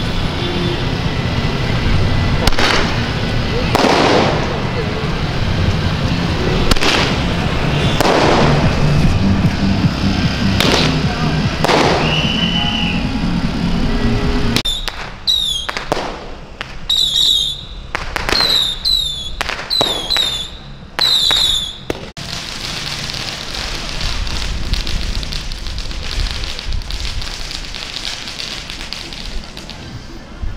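Firecrackers bang at scattered moments over crowd voices and procession music. After an abrupt change about halfway, a quick run of sharp cracks follows, then a steady crowd and street noise.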